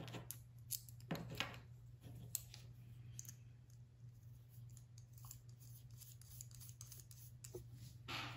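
Faint scattered clicks and taps of tiny metal screws and brass standoffs being handled and threaded together by hand, mostly in the first few seconds, over a low steady hum.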